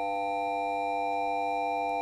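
A sustained electronic chord: several pure, steady tones held together without change.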